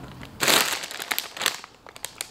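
A foil-lined plastic snack bag is pulled open and crinkles in the hands. A loud crinkling burst comes about half a second in, then fades into scattered crackles.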